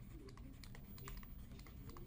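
Faint scattered clicks and taps of a stylus on a pen tablet as words are hand-written, over a faint low steady hum.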